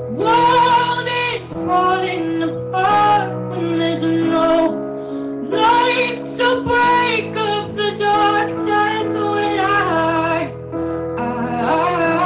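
A female vocalist singing a pop ballad into a microphone over sustained instrumental accompaniment, holding some notes long between shorter sung phrases.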